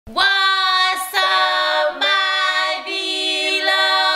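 Women singing a few long held notes, changing pitch about once a second, with no instrumental backing.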